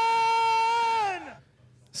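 A high, held voice-like note, steady for about a second and a half, then sliding down in pitch and dying away.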